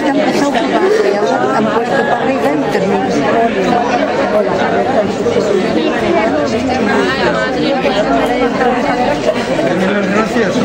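Many people talking at once: a steady, overlapping chatter of voices in a small crowd, with no single speaker standing out.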